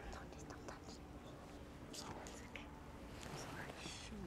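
Faint whispering and soft breathy sounds between two people close to the microphone, over a low steady background hum.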